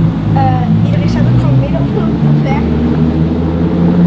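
Lamborghini Huracan EVO's naturally aspirated V10 running at low revs with a steady low hum as the car creeps forward at walking pace.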